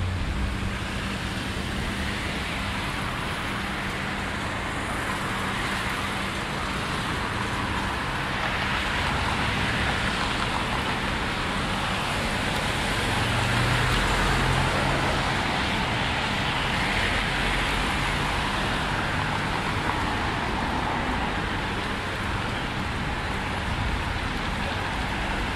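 Steady road traffic: cars passing in a continuous wash of tyre and engine noise, with a deeper rumble swelling louder about midway.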